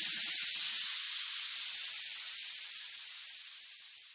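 The closing wash of high noise at the end of an electronic dance track, fading away steadily to silence. The last low synth and bass notes die out under it within the first second.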